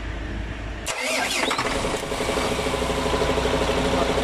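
MAN TGS truck's diesel engine cranked by the starter about a second in, catching after a brief crank and settling into a steady idle. The starter now turns the engine after the chafed starter wiring was repaired.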